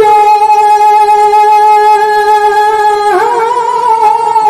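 A man singing one long, high, held note through a stage microphone and PA in the style of Tamil folk stage drama, then breaking into quick wavering ornaments about three seconds in.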